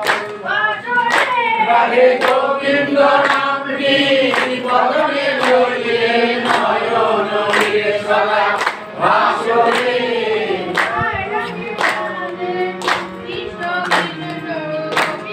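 A group of voices singing a devotional song together, with hand claps keeping a steady beat about once a second.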